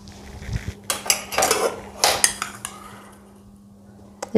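Metal cookware and utensils clattering and clinking: a quick series of knocks and clinks over about two seconds, then quieter.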